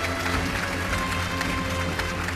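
Jazz big band of saxophones and brass, with piano, guitar and drum kit, playing: held horn notes over a strong bass line with steady cymbal and drum strokes.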